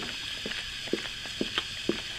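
A mother dog licking her newborn puppy clean just after it is born: soft wet licking clicks, about two a second, over a faint hiss.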